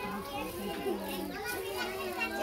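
A crowd of children's voices chattering and calling out at once, several voices overlapping.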